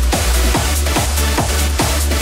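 Electronic dance music, instrumental: a steady four-on-the-floor kick drum at a little over two beats a second over a deep sustained bass line, with no vocals.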